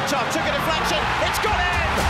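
Background music laid over the stadium broadcast audio, with crowd noise and scattered raised voices.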